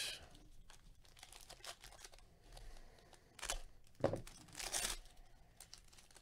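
Foil trading-card pack wrapper being torn open and crinkled by hand: light scattered crackling, with a few louder rips about three and a half to five seconds in.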